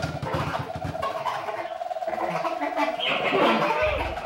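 Free-improvised live music from a small band: the drums drop out and a single held note with a rapid flutter runs for about three seconds, among scattered sliding and squealing sounds, before the band comes back in near the end.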